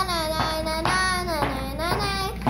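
A young girl singing a wordless "na na na" tune, held notes of about half a second each.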